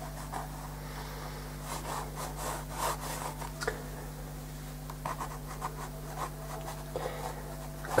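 Watercolour pencil scratching over watercolour paper in short, irregular strokes, over a steady low hum.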